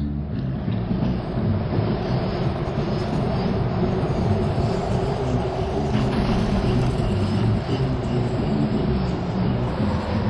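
A steady, loud low rumble with a hiss above it, holding at one level throughout.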